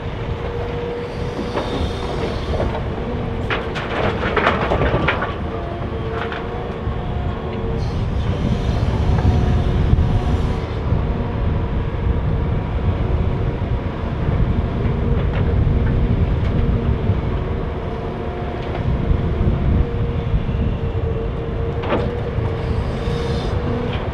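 Liebherr R950 SME crawler excavator's diesel engine and hydraulics working under load through a dig-and-load cycle, a continuous rumble with a steady whining tone. About four seconds in, a bucketful of soil and stones clatters into the steel body of an articulated dump truck.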